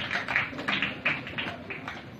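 Audience applause dying away: many hands clapping, growing thinner and fainter.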